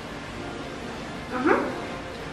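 A dog gives one short yip that rises in pitch about one and a half seconds in, as it is hand-fed a treat.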